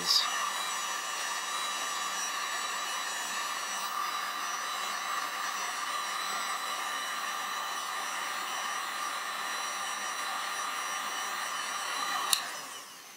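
Electric heat gun running steadily on high, blowing hot air: an even rush of air with a thin, steady motor whine.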